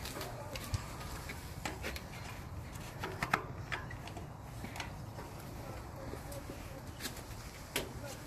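Coiled trailer electrical cables being handled and their plugs pushed into the dummy sockets on the holder: a few faint, scattered clicks and knocks over a low steady background.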